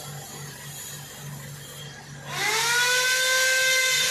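Mobile crane running with a low pulsing hum, then a bit over two seconds in a loud whine rises in pitch and levels off into a steady high whine as the crane powers up while holding the marble statue.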